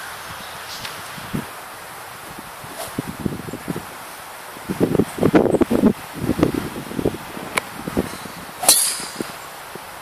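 Golf driver striking the ball off the tee with one sharp crack near the end. Before it, a low rustling with gusts on the microphone that swells in the middle.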